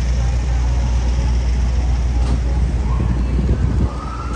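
Street traffic at a busy city intersection: a steady low rumble of passing cars and a van. Near the end a siren starts to rise in pitch.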